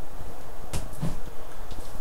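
Nunchaku swung in practice strikes: two brief swishes close together, about three-quarters of a second and a second in, over a steady background hiss.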